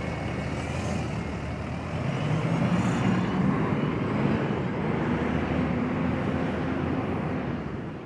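City transit bus engine running close by, a steady low drone with road noise; the drone rises a little in pitch about two seconds in and then holds steady.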